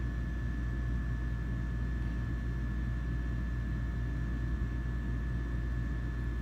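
A steady low background hum, with a thin high whine held unchanged above it; nothing starts or stops.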